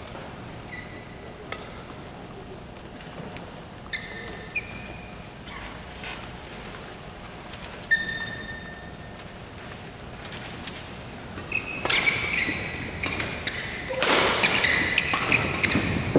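Badminton rally in a sports hall: after a few scattered shoe squeaks and taps between points, a serve about twelve seconds in starts a fast exchange of racket-on-shuttlecock hits mixed with shoe squeaks on the court mat, growing louder near the end.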